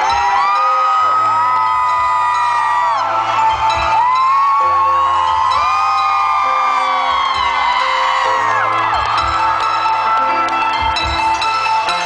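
Live band music with a steady bass and repeated chiming mallet-like notes, with long, high wordless cries over it that rise, hold and fall away in two waves.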